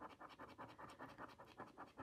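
Faint, quick scraping of a plastic scratcher across the scratch-off coating on a printed book page, a rapid run of short strokes.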